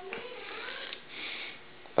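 A short, faint sniff about a second in, in a quiet pause.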